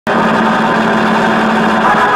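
A loud, steady, machine-like buzzing noise that starts abruptly, the opening sound of a radio news intro; pitched music takes over at the end.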